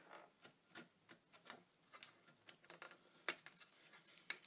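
Faint small clicks and taps of fingers working the small metal latch on a wooden lantern's hinged door, with one sharper click about three seconds in.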